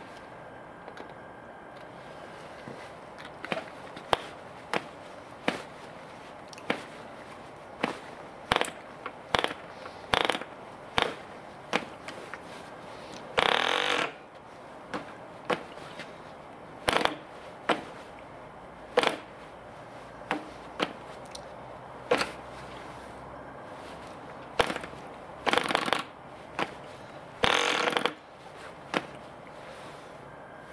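Propeller of a P.A.W. 2.49 cc model diesel engine being flicked over by hand again and again, each flick a sharp snap. The engine fires for a brief burst about halfway through and twice near the end without running on.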